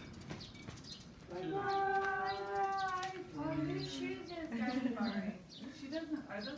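Voices calling out, first in long, drawn-out tones and then in shorter, choppier calls.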